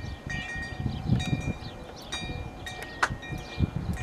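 Wind chimes ringing: several light strikes, their high tones lingering and overlapping between them.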